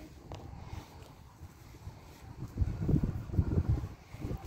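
Wind buffeting the microphone in uneven low rumbles, quiet at first and stronger over the last second and a half.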